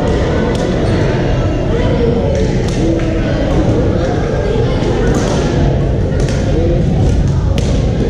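Badminton rackets hitting shuttlecocks: several short, sharp smacks a second or so apart over a steady din of many voices in a large, echoing sports hall.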